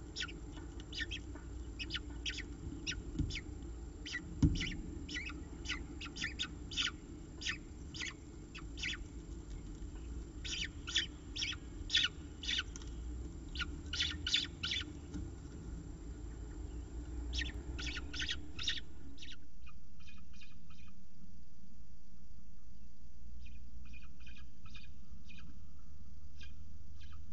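Peregrine falcon chicks begging for food: many short, high-pitched calls in quick irregular runs over a steady low hum, with a single knock about four seconds in. After about nineteen seconds the hum drops away and the calls carry on fainter.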